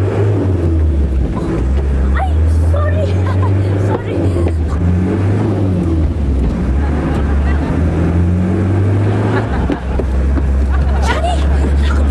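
Minibus engine running hard as the bus is driven fast, a loud low drone that shifts up and down in pitch, with passengers' voices over it.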